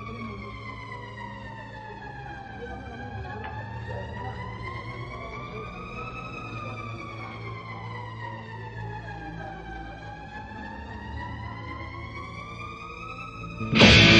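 A siren-like wailing tone rising and falling slowly, about once every seven seconds, over a low steady hum, as the intro of a heavy metal song. Near the end the full band comes in suddenly and much louder with distorted electric guitars.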